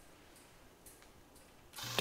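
Near silence: faint room tone with a few soft clicks, and a low hum rising just before the end.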